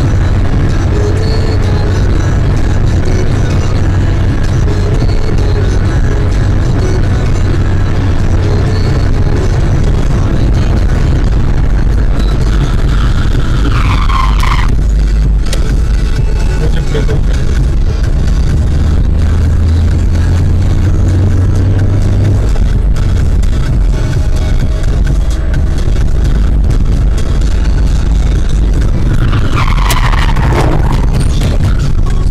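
Steady drone of engine and road noise inside a moving car's cabin, with music playing over it. Halfway through, a falling sweep cuts off abruptly and the sound changes; a second falling sweep comes near the end.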